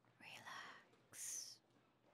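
A woman whispering softly: a short whispered sound, then a brief sharp hiss like a shush.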